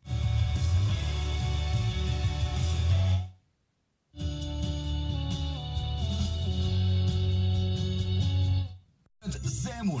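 Car FM radio scanning the band: music from one station, cut off by a silent gap of under a second as the tuner retunes, then music from the next station. A second short cut comes near the end, and a new station follows it.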